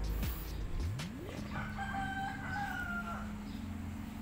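A rooster crowing once, a single held call that starts about a second and a half in and lasts nearly two seconds.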